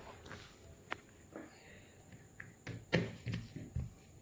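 Quiet handling sounds: a few soft taps and thumps, the loudest about three seconds in, as hands pat and smooth a damp cloth towel flat on a glass tabletop.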